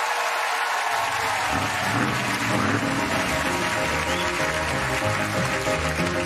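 Audience applause, then 1950s-style music for the routine starts about a second and a half in, with a bass line stepping from note to note.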